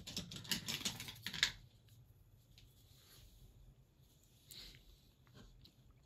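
Small clicks and taps of painting supplies being handled on the desk, a quick flurry in the first second and a half, then faint with a soft tap or two.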